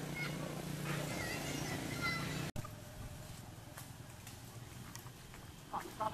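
Outdoor ambience with a steady low hum and a few short high chirps. After an abrupt cut it goes quieter, with faint clicks, and a short run of wavering high-pitched squealing calls starts near the end.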